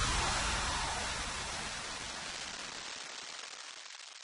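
A hiss of noise fading steadily away, the decaying tail of a logo-animation sound effect; its low end dies out first, about three seconds in.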